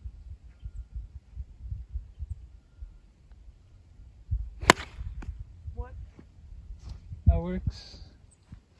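A golf club striking a golf ball in a full swing off the fairway: one sharp, loud crack a little past halfway, over a steady low rumble.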